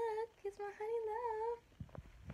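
A woman humming a short wavering tune with her mouth closed, in two phrases with a brief break between them, stopping about a second and a half in.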